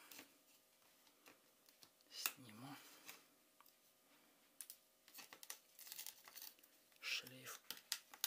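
Faint small clicks and rustles of fingers pulling flex cables and prying at the plastic parts of a stripped-down smartphone, with brief low mutters about two seconds in and again near the end.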